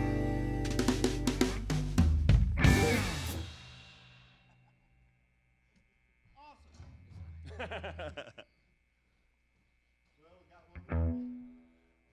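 A live band of guitars, bass and drum kit playing the last bars of a song, ending on a few hard hits about two to three seconds in that ring out and fade away. After a pause, quiet voices are heard, and a brief low sound comes near the end.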